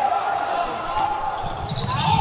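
Basketball being dribbled on a hardwood gym floor during a fast break, over a steady background noise in the hall.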